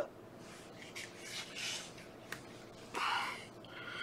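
Quiet handling of fly-tying material, with a single small scissors snip a little past halfway and a short breath out through the nose about three seconds in.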